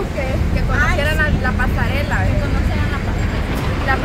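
People talking over a loud, steady low rumble of wind buffeting the microphone.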